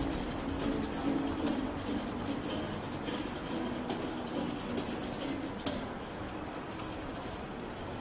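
Hand-held tambourine jingling and struck in an uneven rhythm, with a strummed guitar underneath, played live without the electronic backing track.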